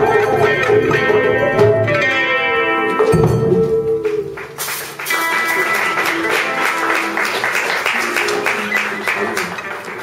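Acoustic guitars and a singing voice close a folk song on a held final note. About halfway through, audience applause breaks out and carries on.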